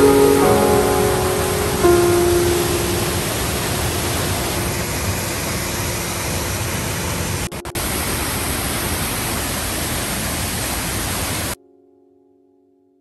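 Steady roar of a waterfall and its rushing pool, with background music tones fading out over the first few seconds. The water sound drops out briefly twice just past the middle and cuts off suddenly near the end.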